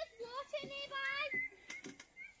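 A child's high-pitched voice calling out in drawn-out, sing-song tones, followed by a couple of short sharp clicks near the end.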